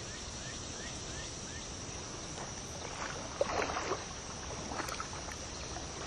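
Water splashing and sloshing, heaviest about three and a half seconds in, as a big fish swirls and thrashes at the surface, over a steady high buzz of insects.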